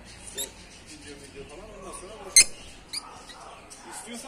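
A lovebird gives one short, sharp high chirp about two and a half seconds in, with a fainter one near the start.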